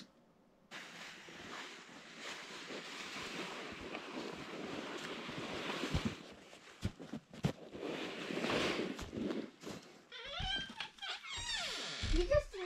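Wind rushing over the microphone outdoors, a steady hiss that swells and fades, with a few scattered knocks. Near the end it gives way to a faint voice.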